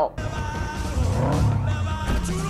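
Car sound over music, cutting in suddenly: an engine running with tyres skidding.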